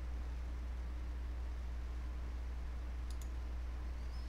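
Two quick computer-mouse clicks close together about three seconds in, over a steady low hum.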